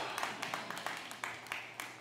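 Faint, scattered clapping from a congregation, irregular claps over a low background.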